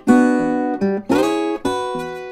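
Acoustic guitar played fingerstyle blues: four chord hits, the third sliding up in pitch. This fits the example's move from E6 down chromatically to E9, a slide up to E6 and back to E9.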